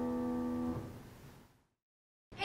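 Saxophone and grand piano holding the final chord of a duet; the chord is released about three-quarters of a second in and dies away in the room's echo, fading out by about halfway through.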